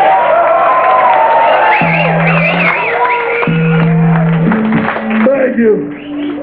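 Hardcore punk band playing live in a club: loud guitars and bass holding long notes that change pitch a few times, with a voice shouting over them and crowd noise, easing off near the end.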